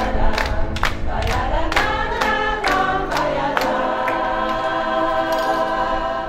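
Choir singing with the singers clapping a steady beat about twice a second. A little past halfway the clapping stops and the choir holds a long chord.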